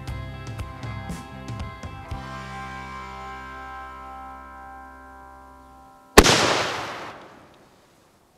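Background music fades out, then about six seconds in there is a single sharp, loud blast with a rushing tail that dies away over about a second and a half: a gourd packed with modified fireworks bursting.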